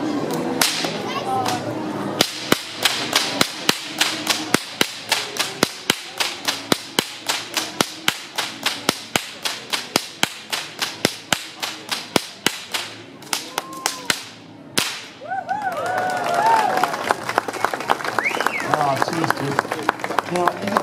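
Two whips cracked in a fast, even Queensland crossover, about three to four sharp cracks a second for some fourteen seconds. The cracking stops about fifteen seconds in and gives way to the crowd cheering and whooping.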